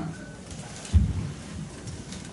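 Handheld microphone being handled as it is passed from one person to another: one low thump about a second in, over quiet room tone.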